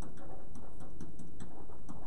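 Pen tapping and scratching on a whiteboard surface while writing: a scatter of faint, light ticks over a steady low room hum.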